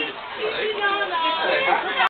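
People talking, several voices overlapping in chatter.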